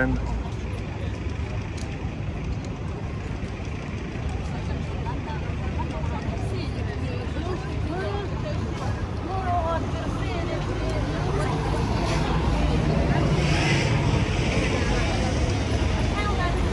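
Busy street ambience: a steady rumble of road traffic with the chatter of a crowd of passers-by. It grows louder about two-thirds of the way in as traffic comes closer.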